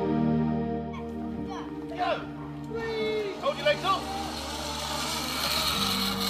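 Soft background music fades out in the first second or two, giving way to outdoor sound with short high calls of children's voices. A rising hiss near the end fits a zip line trolley running along its steel cable.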